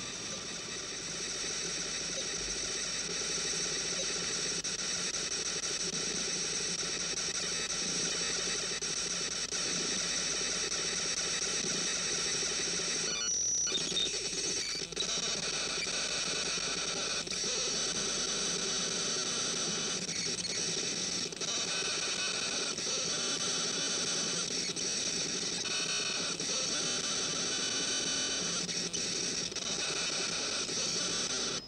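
Steady electronic tones layered over a hiss, some of them shifting in pitch in short patches in the second half, with a brief dropout about halfway: a soundtrack of electronic music or sound effects standing for the computer at work.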